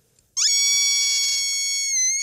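Squeaks, the robot lab-rat puppet, giving his 'roar' as one long, high-pitched squeak that starts about a third of a second in and holds steady, with a slight dip in pitch near the end.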